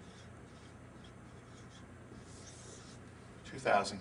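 Dry-erase marker writing on a whiteboard: faint scratchy strokes, with one longer stroke a little past two seconds in.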